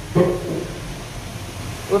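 Low steady hum of the neighbouring Kone EcoDisc elevator travelling in its shaft, heard from inside a stopped car, with a short vocal sound just after the start.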